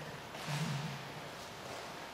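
Quiet room tone in a reading hall, with one short murmured vocal sound about half a second in.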